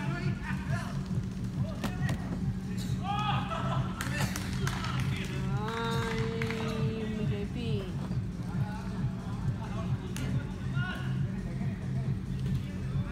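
Indoor soccer game: players shouting and calling to each other across an echoing hall, with sharp knocks of the ball being kicked and one long drawn-out call about six seconds in, over a steady low hum.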